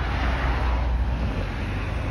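Road traffic: a vehicle passing on the road beside the microphone, its tyre noise swelling over the first second and fading, over a steady low rumble.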